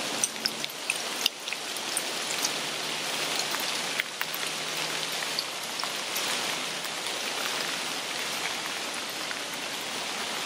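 A steady, rain-like hiss with many small, scattered ticks and pops.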